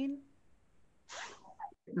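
Video-call audio: a woman's speech trails off, then a short soft noisy sound about a second in, and a brief cut-out before another voice begins a 'mm-hmm' at the very end.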